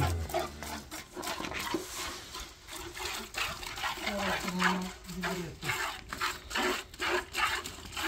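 Hand-milking into a metal pail: squirts of milk from a cow's teats hiss into the bucket, about two or three jets a second as the hands alternate.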